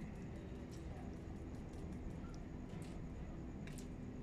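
A few faint taps as a hand knocks a horn panning spoon holding wet ground pyrite, settling the grains so that any heavier gold or silver would separate from the rest. A steady low hum runs underneath.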